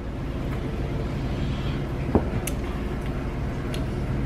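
A steady low background hum, with one short click a little after two seconds and two fainter ticks later.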